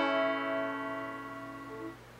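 Five-string banjo, capoed at the second fret, with its final strummed chord ringing out and fading away at the end of the song.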